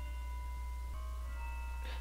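Faint Christmas music carrying from a church across the street: a held note that changes to a new chord about a second in, with other notes coming in after.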